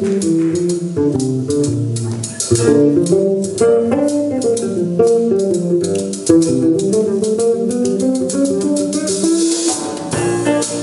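Electric bass guitar playing a melodic jazz solo line of quick note runs, over a drum kit's steady cymbal pattern.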